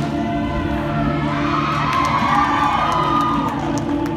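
Audience cheering and whooping over the routine's recorded music. The cheer swells about a second in and fades near the end, just as the flags are tossed high.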